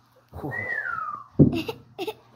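A single whistled note gliding downward for most of a second, followed by a short thump about a second and a half in.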